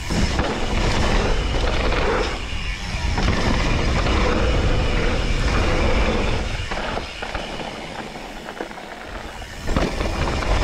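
Propain Tyee mountain bike ridden fast over dirt: tyres rolling, frame and chain rattling, and wind buffeting the camera microphone. The noise drops for about three seconds as the bike goes over the jump, then a sudden loud thud comes with the landing near the end.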